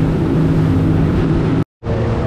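A boat's outboard engines running steadily under way, a low even hum with wind and water rushing past. The sound drops out for a moment near the end.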